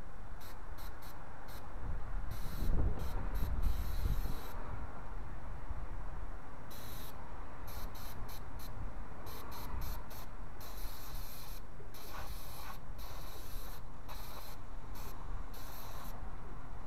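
Aerosol can of electronic contact cleaner sprayed onto a mass airflow sensor, hissing on and off in many short bursts and a few longer ones. A few low bumps about three seconds in are the loudest sounds.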